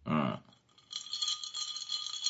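Ice clinking and rattling in a drinking glass as it is picked up, with a ringing glassy tone from about a second in. A short vocal sound comes at the very start.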